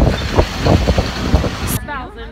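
City street traffic noise with a heavy low rumble under a few spoken words; it drops away abruptly near the end to quieter street sound.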